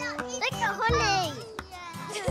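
Young children's excited, high-pitched voices and squeals over light background music.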